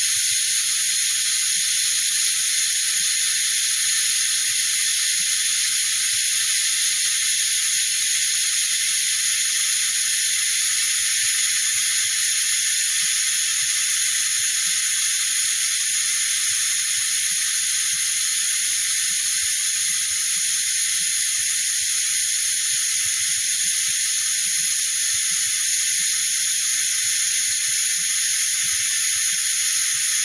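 Compressed shop air hissing steadily through a Maddox venturi-type cooling system vacuum refill tool as it pulls vacuum on a vehicle's cooling system. This is the vacuum-building stage of a leak test before refilling with coolant.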